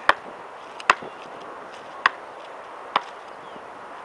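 Basketball being dribbled, four sharp bounces about a second apart.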